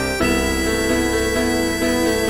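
Score playback of an instrumental song arrangement: a reedy melody line holding long notes over sustained accompaniment chords, with note changes just after the start and near the end.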